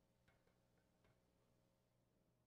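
Near silence: faint room tone with a low steady hum and a few very faint taps.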